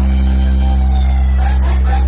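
DJ 'humming' bass: one deep, steady bass tone held without a break, very loud, with faint higher musical notes over it.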